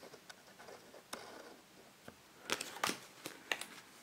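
Bicycle Table Talk playing cards being handled and spread by hand: faint scattered card slides and soft clicks, with a small cluster of louder clicks about two and a half to three and a half seconds in.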